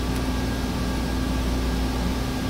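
Room tone between speech: a steady low hum with an even hiss, unchanging throughout.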